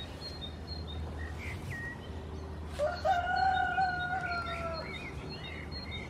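A rooster crowing once about halfway through, its final note held for about two seconds, with small birds chirping now and then.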